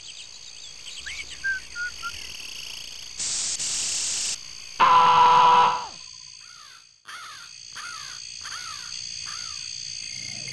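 Night-time animal ambience on an animation soundtrack: steady high insect chirring with short chirps. A loud, harsh, second-long call about five seconds in is the loudest sound. After a sudden break, a quick repeated chirping follows.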